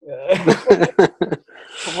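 Men laughing together in quick bursts, with a word of speech near the end.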